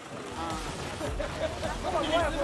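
Busy street ambience: several people talking at once over a low rumble of traffic.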